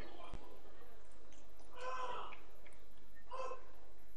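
Two short voice calls ring out in a large sports hall, about two seconds in and again about a second and a half later, over steady hall background noise. A single short knock sounds just after the start.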